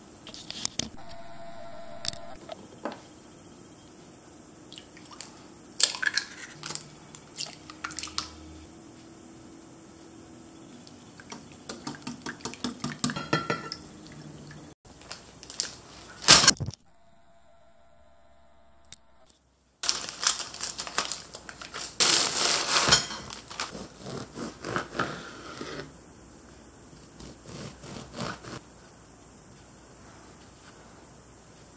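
Kitchen prep sounds: a wire whisk beating a mixture in a ceramic bowl, heard as a quick run of clinks a little before the middle, among scattered knocks and clatter of dishes and utensils on a counter.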